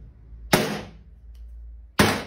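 Two sharp knocks about a second and a half apart, each dying away quickly, as small grooming tools are set down one after another on a plastic tabletop.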